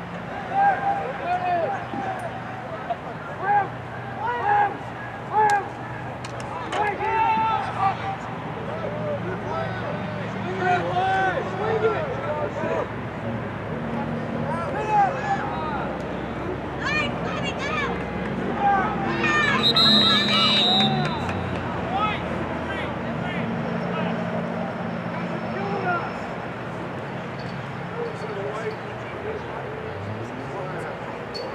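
Scattered shouts and calls of players and coaches across an outdoor lacrosse field, with a steady low hum underneath. A brief high steady tone sounds about twenty seconds in.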